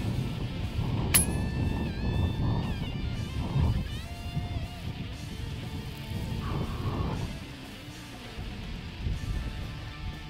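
Background guitar music over the low rumble of strong wind on the microphone, with one sharp crack about a second in: a shot from an FX Impact PCP air rifle in .30 calibre.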